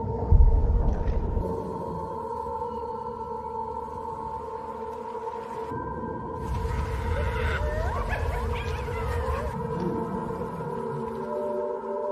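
Cinematic soundtrack drone of steady held tones, with a deep boom about half a second in, then a low rumble carrying wavering, gliding tones from about six to nine and a half seconds.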